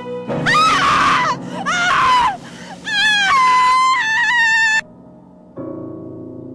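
A woman screaming in terror: several loud, high screams in a row, the pitch sliding up and down, which cut off suddenly; soft piano music comes in near the end.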